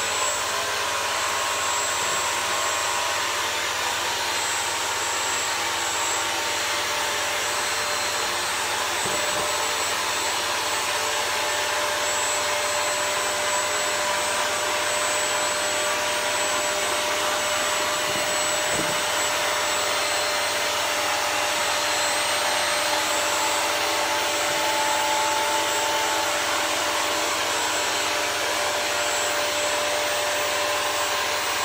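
Bissell CrossWave wet-dry floor cleaner running steadily in rug mode, its suction motor and brush roll working over a carpet rug, with a constant whine over the rushing air.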